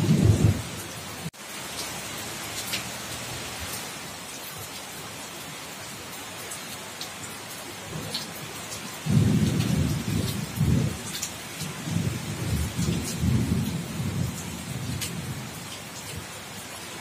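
Steady heavy rain falling on a corrugated roof and a wet concrete yard, with scattered sharp drip ticks. Thunder rumbles briefly at the start, then again in a longer, uneven roll from about nine seconds in to near the end.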